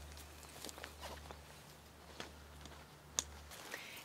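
Faint handling sounds as a tent rainfly's plastic buckle is fastened into the tent body: light rustling of fabric with scattered small clicks, and a couple of sharper clicks a little after two and three seconds in.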